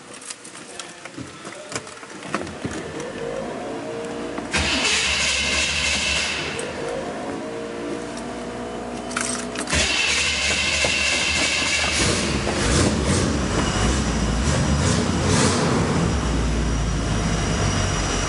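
Chevy 400 V8 with dual exhaust, fitted to a customized 1953 Oldsmobile, starting and then running, heard from inside the cabin. It gets louder in a step about four and a half seconds in and again about nine seconds in, with a heavier low rumble from about twelve seconds. It has a healthy sound.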